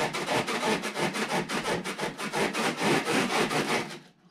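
Loud, rapid rasping or rubbing noise, several uneven strokes a second, that stops suddenly near the end.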